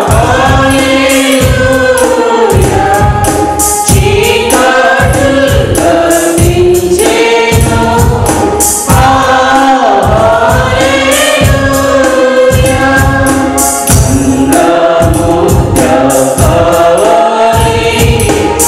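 Mixed choir of men's and women's voices singing a Telugu Christian Easter hymn through microphones, over accompaniment with a steady beat.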